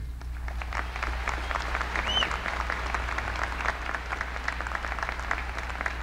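Audience applauding: a dense run of hand claps through the pause, with a short high whoop from the crowd about two seconds in.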